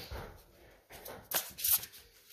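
A deck of oracle cards being handled and shuffled by hand: a soft rustle of cards, then a short run of crisp card snaps about a second and a half in.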